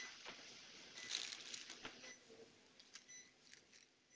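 Very faint room sound: soft rustling and a few light clicks of handling, with a short faint beep about once a second from the patient monitor, keeping time with a heart rate in the high fifties.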